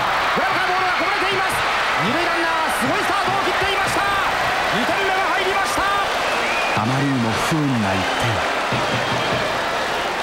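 Baseball stadium crowd noise, with music and chanting voices from the stands running through. A man's voice speaks briefly about seven seconds in.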